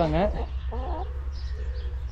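A flock of laying hens clucking, short low clucks repeating every half second or so, with higher chirps above them.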